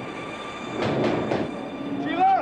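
Train noise: a steady rush with faint high steady tones running through it and a few sharp clanks about a second in.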